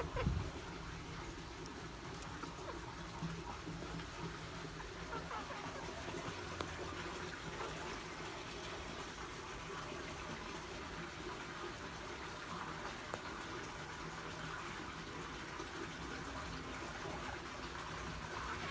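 Faint, steady background hiss, with a single thump just at the start and a few soft clicks scattered through it.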